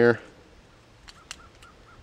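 Two light sharp clicks about a second in, a Walther P22 pistol's magazine being swapped for a fresh one, with a faint quick run of high chirps behind them.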